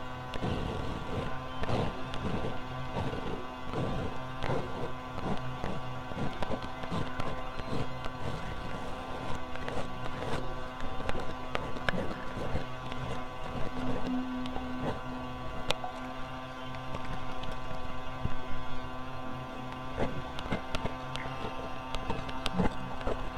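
A cartridge razor scraping over lathered stubble, close-miked and amplified into many irregular short strokes. It is layered with a steady electronic drone of several sustained tones, one of which swells briefly about fourteen seconds in.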